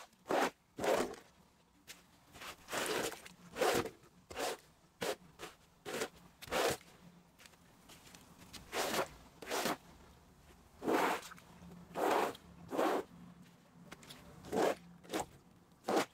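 Short, scratchy strokes of a hand brush scrubbing the pile of a wool rug, irregular, about one or two a second.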